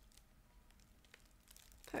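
Faint crinkling and a few light ticks from hands working a pronged hat elastic through the woven straw of a hat.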